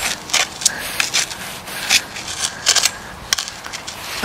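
Steel spade blade cutting and scraping into soil: a run of irregular gritty crunches as it is pushed in and levered.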